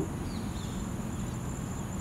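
A cricket-type insect singing a steady, high-pitched trill over a low background rumble.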